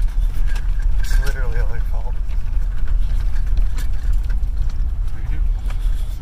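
Steady low rumble of a vehicle heard from inside its cab, with a brief bit of a man's voice about a second in.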